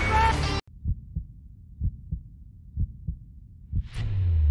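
Music cuts off abruptly about half a second in. A suspense heartbeat sound effect follows: low double thumps, about one pair a second.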